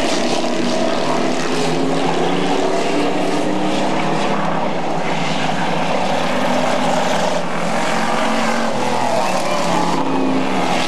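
Street stock race cars' engines running at speed on an asphalt oval. It is a loud, steady drone with several engine notes at once, drifting slightly in pitch as the cars circulate.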